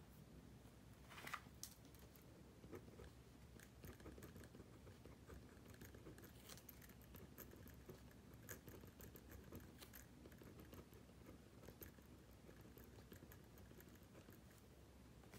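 Faint pencil writing on paper: soft irregular scratches and small ticks of the pencil, with a slightly louder scratching stroke about a second and a half in.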